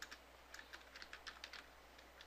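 Faint computer keyboard typing: a quick run of about ten keystrokes that stops about a second and a half in.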